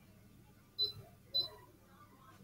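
Two short, sharp mouse clicks, a little over half a second apart.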